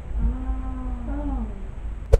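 Two young women letting out a long, drawn-out 'ooooh' together, the teasing reaction to a put-down; the pitch lifts briefly about a second in and then falls away.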